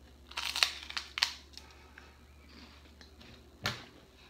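Crisp crunching of a bite into a light, airy fish-shaped chocolate wafer: a few short crunches in the first second and a half, then one more near the end.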